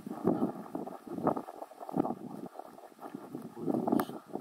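Footsteps crunching in snow, two people walking at an uneven pace.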